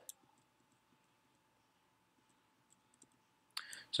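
Near silence with faint room tone, broken by one soft click just after the start and a few tinier ticks later on; a breath and the start of speech come just before the end.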